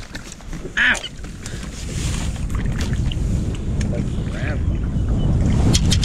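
Wind rumbling on the microphone over open water, growing a little louder after about two seconds, with a short voice sound about a second in.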